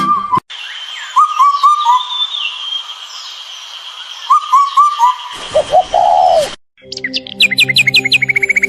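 Recorded birdsong: a bird calls in two runs of three quick falling notes, with a steady high-pitched hum behind it and a few lower notes toward the end. Music with chirpy high notes comes back near the end.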